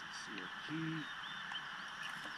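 A man's voice giving a short, low murmur, like an 'mm', a little under a second in, over a steady outdoor hiss.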